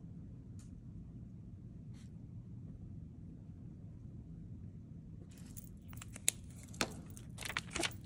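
Quiet room hum with a couple of faint ticks, then from about five seconds in a run of rustling, crinkling handling noises as the A6 paper notebook is moved and handled.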